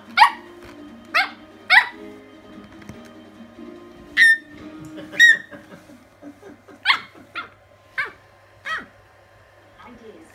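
A small dog giving a string of short, high-pitched barks, about nine in all, spaced irregularly.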